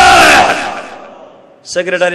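A man's loud, drawn-out shouted call through a microphone and loudspeakers, held on one steady pitch. It cuts off about half a second in and leaves a long echo that dies away over the next second, before talking resumes near the end.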